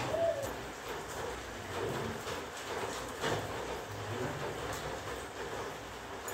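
A bird cooing, two short low calls, with a few faint clicks.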